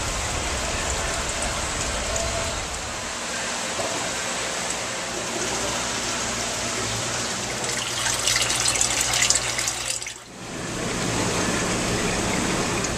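Water running and splashing through saltwater aquarium holding tanks, a steady rush with a low machine hum beneath it; it turns louder and sharper for about two seconds near the end, then briefly drops away.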